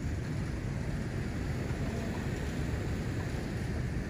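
Wind buffeting a phone's microphone: a steady, fluttering low rumble with no distinct events.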